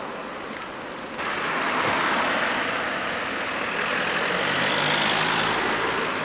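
Road traffic: cars driving past on the village street, a steady tyre and engine hiss that rises suddenly about a second in.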